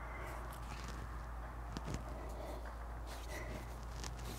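Faint room tone with a steady low hum, broken by a few soft short ticks and rustles near the middle, as of a body shifting slowly during a stretch.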